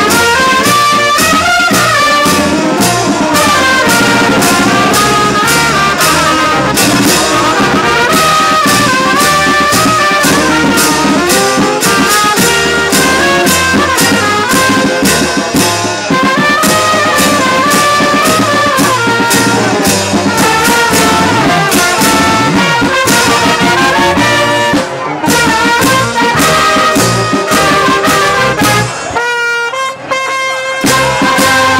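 Brass band playing a lively tune, with trumpets and trombones over a steady beat. Near the end the music breaks off briefly, then a held brass chord begins.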